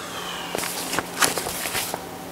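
Rustling handling noise with a few light knocks, lasting about a second and a half from about half a second in, with one louder rustle near the middle.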